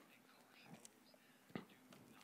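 Near silence: faint breathing and small mouth noises picked up close to a handheld microphone, with one soft click about one and a half seconds in.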